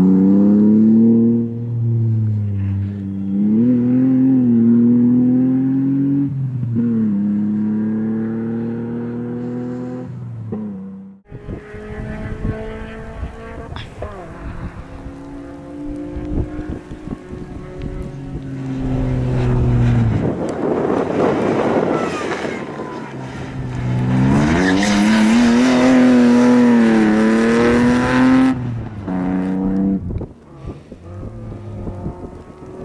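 Opel Astra race car engine revving hard, its pitch rising and falling with each lift-off and gear change. The sound breaks off suddenly about eleven seconds in; afterwards the engine is heard again, with a stretch of wind rumble on the microphone in the middle.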